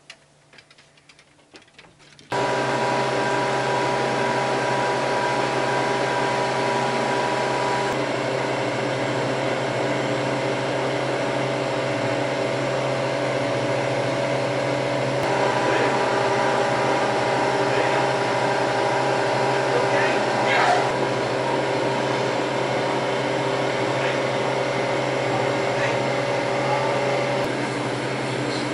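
Harvest Right home freeze dryer running steadily partway through its drying cycle: a constant mechanical hum with several steady tones. It starts abruptly about two seconds in, after a faint, quiet stretch.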